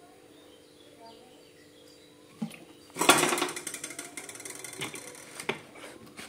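Cooking oil in a hot steel wok: after a faint steady hum, a sudden burst of rapid crackling and spitting starts about three seconds in and dies away over the next couple of seconds.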